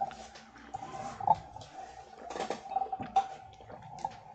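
A person sipping and swallowing a drink from a lidded glass tumbler, with a few small knocks and clicks as the glass is handled. A steady faint tone runs underneath.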